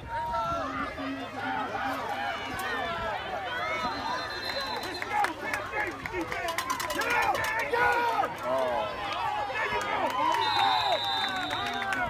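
Many overlapping voices of sideline spectators and coaches at a youth football game, shouting and chattering with no single clear speaker.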